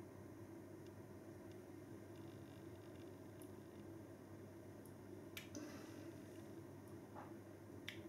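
A man tasting a mouthful of beer, making a few faint lip smacks and mouth clicks over a low room hum. The sharpest click comes about five seconds in and another near the end.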